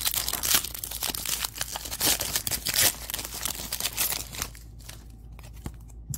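A plastic trading-card pack wrapper being torn open and crinkled by hand: a dense run of crackling for about four seconds, then only light handling noise.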